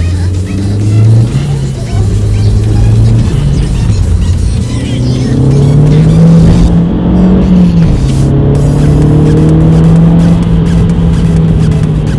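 Seat Leon 1.8T's turbocharged four-cylinder engine heard from inside the cabin as the car accelerates through the gears: the pitch rises, drops at a shift about a second in, climbs again from about four seconds to nearly eight, drops at the next shift and then holds fairly steady.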